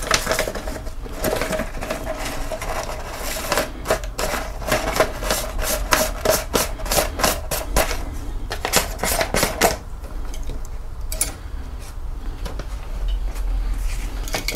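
Rapid series of light clicks and taps, several a second, as a metal spatula and paper are tapped to knock sodium hydroxide into a plastic beaker of diluted D-23 developer; the chemical clings, so it has to be tapped off. The taps thin out after about ten seconds.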